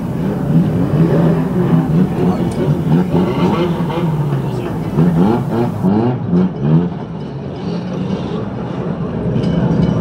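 Several banger race cars' engines running and being blipped, their pitch rising and falling as they crawl round the track.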